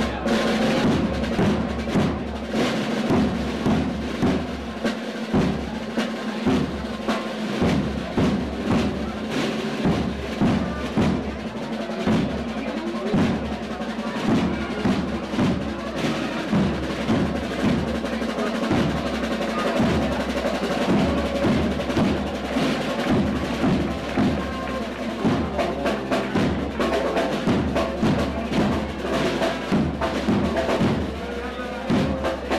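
Symphonic wind band playing a procession march, with sustained brass and woodwind notes over prominent snare drum rolls and bass drum beats.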